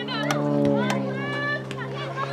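Teenage girls' voices calling out across a soccer field during play, short shouts and calls over a steady low hum.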